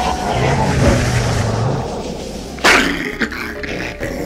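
Dogs growling and snarling, with a sudden louder, sharper burst about two and a half seconds in.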